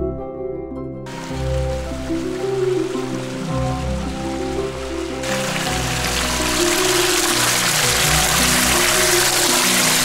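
A small mountain stream pouring and splashing over rocks in a little cascade, with a steady rush that comes in about a second in and grows louder about five seconds in. Soft background music plays throughout.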